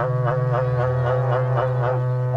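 A berrante, the long Brazilian cattle-horn trumpet, is blown in one sustained low note. A rhythmic pulsing runs over the note about four times a second.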